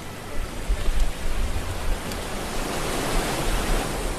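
Steady rushing noise with a low rumble that swells and falls.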